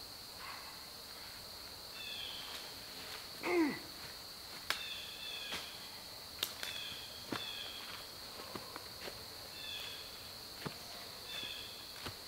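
Footsteps and crackling twigs on forest leaf litter, with scattered sharp knocks as a heavy log is handled and carried. Under it runs a steady high insect drone, with short high calls repeating every second or two. One louder cry, about three and a half seconds in, falls steeply in pitch.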